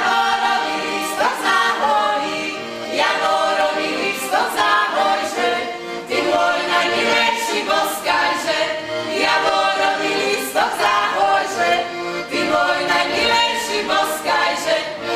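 A folk ensemble's voices singing a Slovak folk song together in harmony, in phrases of a second or two, several opening with a rising slide into the note.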